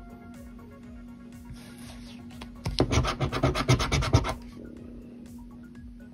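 A scratcher coin scraping the coating off a lottery scratch-off ticket: one loud burst of rapid back-and-forth strokes, about ten a second, lasting about a second and a half near the middle, over quiet background music.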